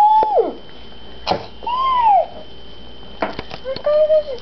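A small child makes short hummed "mm" sounds that rise and fall in pitch, while children's scissors snip cardboard with a few sharp clicks, one about a third of the way in and a quick cluster late on.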